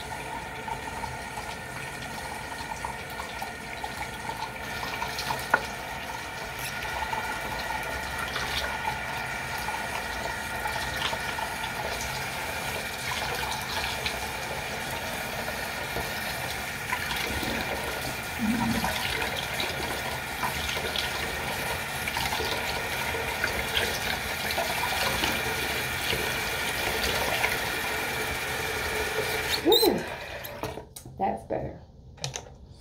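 Bathroom tap running steadily into the sink, cutting off suddenly at the very end.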